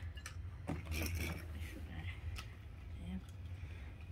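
Beyblade spinning top running in a plastic stadium: a faint steady whir with a few light clicks.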